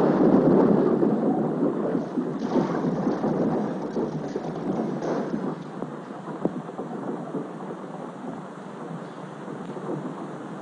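Rumble of a six-pound cast pentolite shaped-charge blast under a freight car's axle, loudest at the start and fading over several seconds, with scattered crackles through it.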